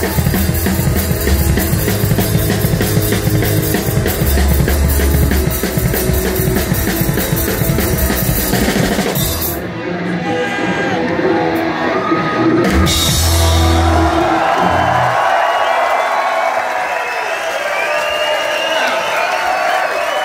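Punk rock band playing live: drum kit and distorted electric guitars and bass at full volume, thinning out about halfway, then a last loud passage of drums and bass that ends the song. The crowd cheers and yells over the last few seconds.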